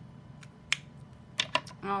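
Plastic clicks of an alcohol marker being capped and put down on a cutting mat: a faint tick, a sharp click under a second in, then three quick clicks about a second and a half in.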